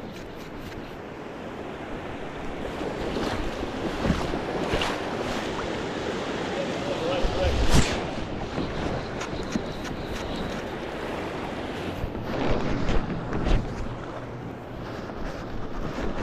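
Steady rush of fast river water running over rocks, with wind on the microphone. A few handling knocks come through, the loudest a thump about eight seconds in.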